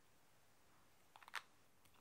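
Near silence, broken about a second in by a quick cluster of small plastic clicks from handling a small plastic conditioner bottle and its black screw cap.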